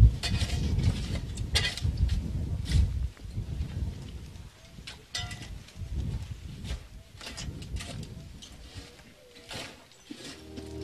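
Shovels digging and scraping into loose stone rubble and soil while a grave is filled, with a few sharp scrapes spread irregularly over a low rumble.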